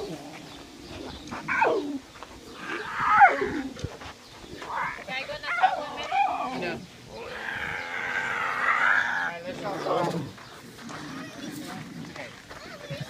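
Lion and tiger cubs calling: several short, high cries that fall sharply in pitch, and a longer wavering cry about two-thirds of the way in.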